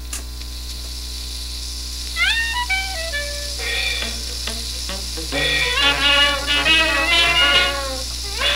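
A 78 rpm shellac record of 1920s hot jazz playing on a record player, with a steady mains hum and surface hiss. A click comes first, then about two seconds in a few sliding, upward-gliding notes, and the full band comes in about halfway through.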